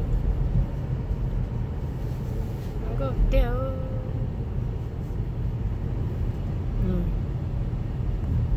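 Steady low rumble of a car driving, heard from inside the cabin. About three seconds in, a voice sings one short wavering, drawn-out phrase, and it briefly sounds again near the end.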